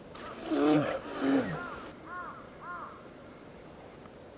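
A crow cawing three times, about half a second apart, after a short call with a falling pitch, over faint outdoor ambience.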